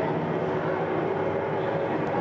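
Steady low drone of WWII propeller aircraft engines, played as the soundtrack of a projected museum film.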